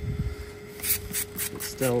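Hand trigger spray bottle squirting water onto a cow's hoof in quick short hissing squirts, about five a second, starting about a second in.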